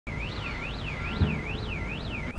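An electronic alarm wailing, its pitch sweeping up and down about twice a second, over a low rumble.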